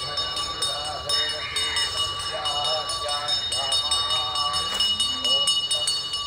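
Group of men chanting Vedic Sanskrit mantras together while walking, over a steady high ringing with a fast, regular ticking.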